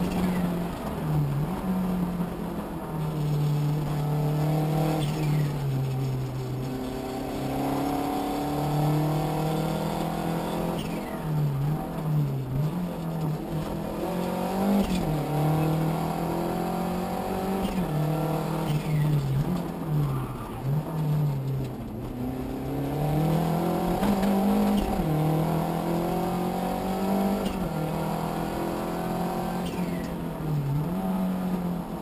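Renault Super 5 GT Turbo's turbocharged four-cylinder engine heard from inside the cabin, driven hard at full rally pace: the note climbs through the revs and drops sharply again and again as the driver shifts gears and lifts off.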